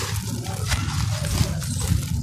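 Hands squeezing and breaking apart a crumbly lump of dry sand-cement mix: continuous gritty crunching with many small sharp crackles as the lump breaks, and crumbs falling onto loose gravelly grit. A steady low rumble runs underneath.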